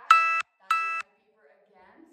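Electronic beeping: two short, identical steady-pitched beeps about half a second apart, the end of a run of three, stopping about a second in.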